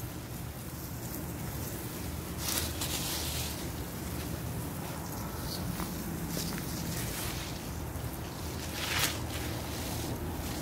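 Garden hose spray hissing and spattering onto grass and shrubs, over a steady low rumble; the hiss surges briefly about two and a half seconds in and again near the end.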